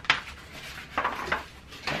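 Handling noise of a plastic foam-sprayer bottle and its cardboard box: a sharp knock at the start, then a few lighter knocks and taps about a second in.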